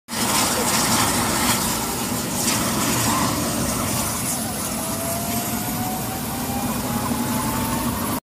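Helicopter running on the ground with its main rotor turning: a loud, steady mix of turbine noise and rotor wash. About halfway through, a thin whine starts and slowly rises in pitch as the engine speeds up.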